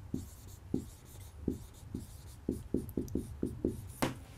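Marker writing on a whiteboard: a string of short squeaks and taps as the letters are formed, coming faster in the second half.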